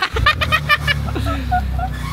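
Honda Civic Type R FL5's 2.0-litre turbocharged four-cylinder starting up: a quick crank that catches, flares and then settles to a steady idle.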